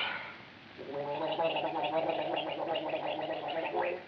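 Someone gargling: a throaty, bubbling voiced sound held for about three seconds, starting about a second in. A short breathy sound comes at the very start.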